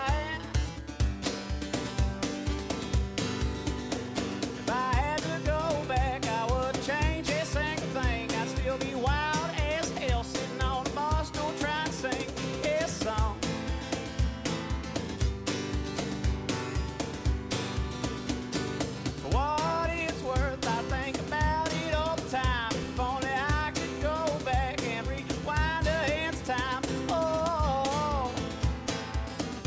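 Country song played on acoustic guitar over a steady beat. Sung vocals come in about five seconds in, pause at around thirteen seconds, and return at about nineteen seconds.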